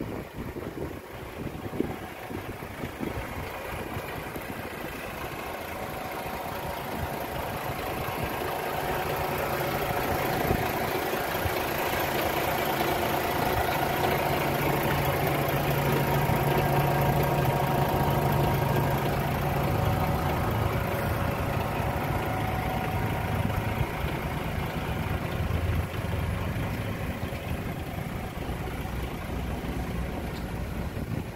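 DAF XF480 truck's PACCAR MX-13 straight-six diesel idling steadily, growing louder toward the middle and easing off again near the end.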